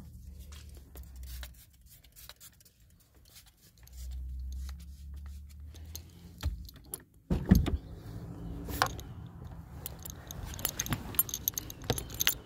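Keys jangling and a phone being handled, with one loud car-door thump about seven and a half seconds in, and light clicks and rattles after it.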